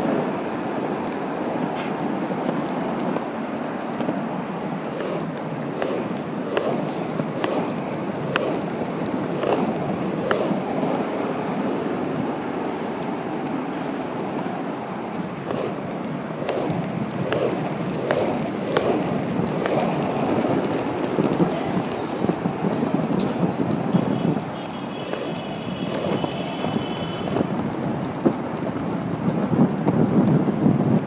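Penny board's small polyurethane wheels rolling over an asphalt path at cruising speed: a steady, rough rumble with scattered clicks. About three-quarters of the way through, a high tone sounds over it for about three seconds.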